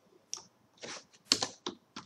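Keystrokes on a computer keyboard: about six separate key presses at uneven intervals as a short line of text is typed.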